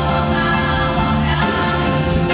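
Live music: a choir singing long held notes over an instrumental band accompaniment.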